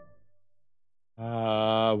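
A flute note dies away, then after a brief near-silence a man's voice comes in about a second in, chanting one long steady held note on "I".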